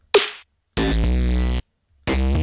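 Serum software synth bass in Cubase: a short drum hit from the beat dies away, then a single synth note sounds for just under a second, with silent gaps between, as the melody is auditioned in fragments.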